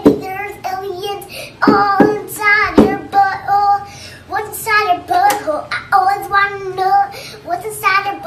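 A young girl singing in a bright, wavering voice, with a few sharp strums on a small nylon-string classical guitar in the first three seconds.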